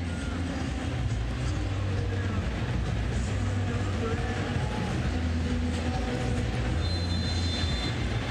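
Stadium crowd noise: a steady roar from the stands during a football match broadcast.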